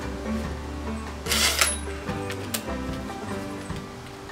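Background music, with a cordless drill running briefly in reverse against a deck screw in treated lumber about a second in, followed by a short click.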